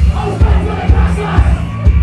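Live band music with a steady kick-drum beat and a held bass line, and many voices shouting together over it like a crowd chanting along.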